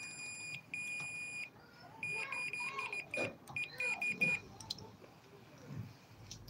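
A digital multimeter's continuity beeper sounds a steady high tone in on-and-off stretches as the probes touch the circular saw armature's commutator bars, then stops after about four and a half seconds. The beeping shows continuity where there should be none: the armature winding is shorted.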